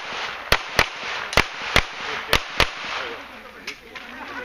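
Gunshots fired in pairs on a practical-shooting stage: three double taps, the two shots of each pair about a quarter second apart and the pairs just under a second apart, then one fainter shot near the end.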